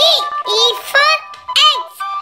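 Children's song: music with a steady backing and a high, synthetic-sounding voice singing short phrases about twice a second.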